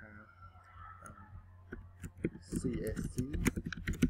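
Computer keyboard keys clicking as a short phrase is typed, a run of quick keystrokes in the second half, with voices talking over it and a steady low hum underneath.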